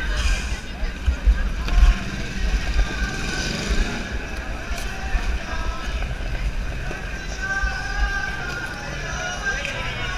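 Busy city sidewalk ambience: crowd chatter and passing traffic, with music playing in the background.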